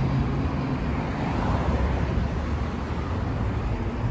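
Steady city street traffic noise: a continuous low rumble of road traffic with no distinct events.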